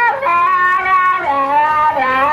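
A dog howling: one long, wavering, drawn-out howl that drops to a lower pitch a little past halfway through.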